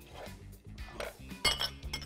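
Background music, with one sharp metallic clink about one and a half seconds in as a kitchen knife is set down on a wooden cutting board.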